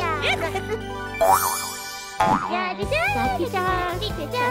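Cartoon soundtrack: background music with sound effects, a bright rising shimmer about a second in and a sharp hit just after two seconds, over babies' gliding babble and giggles.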